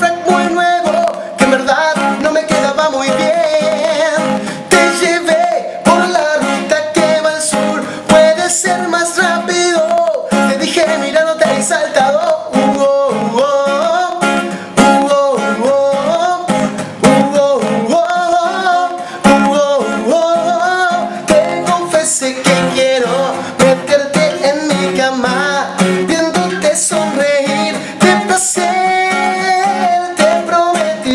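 A man singing a cumbia song to his own strummed acoustic guitar, live and unplugged, with no pause.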